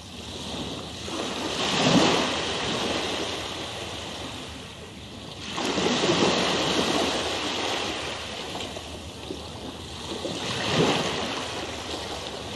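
Rushing water sound, like surf, swelling and fading back three times, about every four to five seconds.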